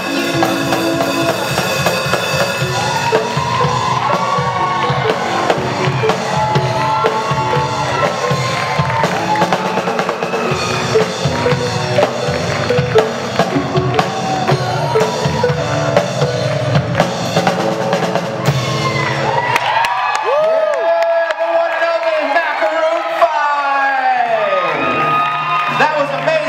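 Live rock band of electric guitars, bass, keyboard and drum kit playing. About 20 seconds in, the drums and bass stop, leaving sliding, bending notes over a held low note as the song ends.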